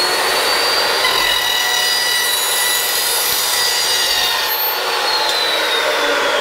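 Evolution S355MCS 14-inch metal-cutting chop saw running with its carbide-tipped thin-steel blade, making a miter cut through thin-wall round steel tubing about a millimetre thick. Its steady high whine starts falling about five seconds in as the blade winds down.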